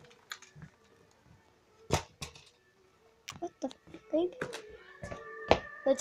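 A few sharp clicks and knocks in a quiet room, then a television's sound coming on about five seconds in as steady tones at several pitches; the TV has been turning itself on and off.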